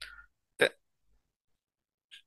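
A single short, sharp sound from the narrator's mouth or throat, a hiccup-like catch of breath about half a second in, after which everything is silent.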